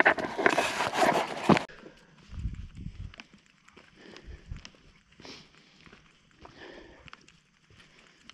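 Footsteps on a hiking trail. For the first second and a half they are close and loud, a rustling crunch through dry leaves. Then they go quieter, with soft low thuds of steps on dirt and rock.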